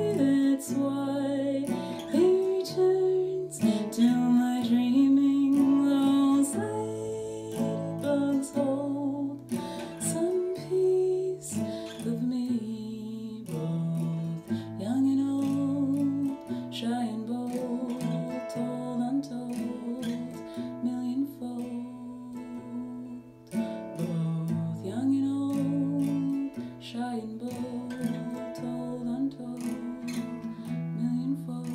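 A woman singing while playing a capoed steel-string acoustic guitar.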